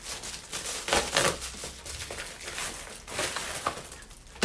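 Plastic mailer bag crinkling and rustling as it is pulled open by hand and a packet is drawn out, in a run of irregular crackles that are loudest about a second in.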